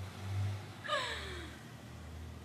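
A woman's short wordless vocal sound, like a sigh, falling steeply in pitch about a second in, over a low steady hum.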